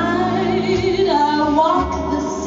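A woman singing a torch song into a microphone, holding notes with a wide vibrato.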